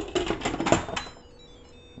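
Lid of an electric pressure cooker clicking and clattering as it is set on and seated on the pot, a quick run of sharp clicks in the first second, then quieter.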